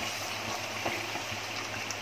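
Mutton gravy simmering in an aluminium pot, a steady bubbling hiss.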